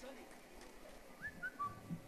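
A lull with a faint, short whistle-like tone about a second and a quarter in that rises and then steps down in pitch.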